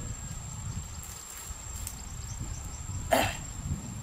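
A person coughs once, a short loud cough about three seconds in, over a steady low rumble.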